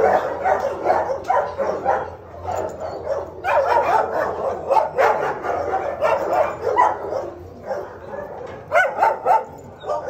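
A dog barking and yipping in quick runs of short calls, with a pause about two seconds in and another near the end.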